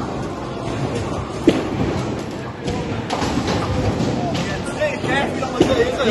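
Tenpin bowling ball rolling down a lane and hitting the pins in a busy bowling alley, with a sharp knock about a second and a half in over a steady din of chatter and rolling balls.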